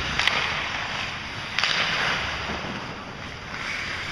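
Ice hockey play on a rink: skate blades scraping the ice in sudden hissing bursts that fade over about a second, with one near the start and another about a second and a half in. A single sharp click, such as a stick on the puck, comes about a quarter second in.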